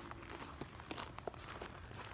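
Footsteps of people walking on snow over ice, several separate steps.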